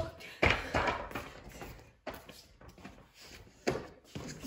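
A basketball bouncing on a concrete floor: a loud bounce about half a second in, then a few weaker ones dying away, and another loud thud near the end.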